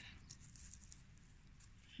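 Near silence, with a few faint, light rustles as fingers handle a frost-covered leaf.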